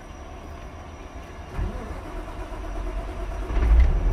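Semi truck's diesel engine starting: a low rumble that builds from about halfway through and grows louder near the end.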